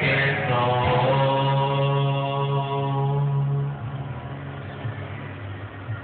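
Karaoke music ending on a long held note that sustains for a few seconds, then drops away about four seconds in, leaving only quieter leftover sound.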